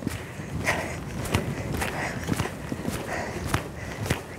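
Footfalls on a sand riding-arena surface: a run of soft, uneven thuds.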